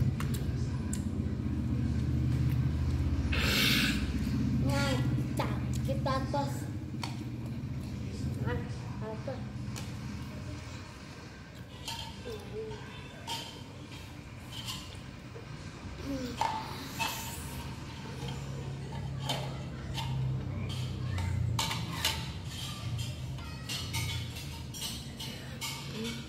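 Scattered short bits of a child's voice with occasional small clicks and knocks, over a low steady hum that is louder in the first few seconds.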